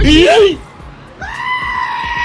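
A single long, steady, high-pitched cry, held at one pitch for about a second and a half, starting a little past the middle.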